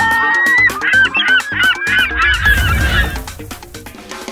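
A seagull sound effect: many gulls squawking at once, overlapping calls for about three seconds over background music, with a low rumble swelling near the end before it fades.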